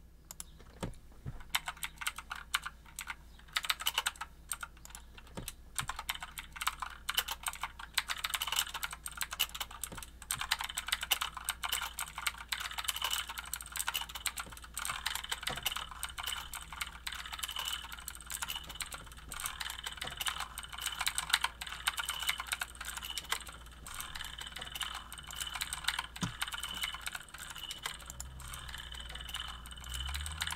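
Typing on a computer keyboard: keys clicking in quick, irregular runs.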